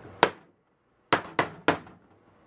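Four hammer blows on a MacBook Pro laptop's cracked glass screen. There is one sharp hit near the start, then three quick hits in a row about a second later.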